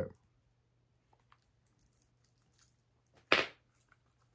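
Faint small clicks of a plastic fashion doll being handled, then a short, sharp hiss about three seconds in.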